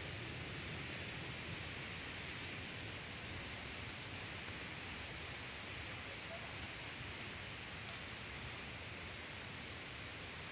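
Steady rushing noise of a waterfall, slowly growing fainter.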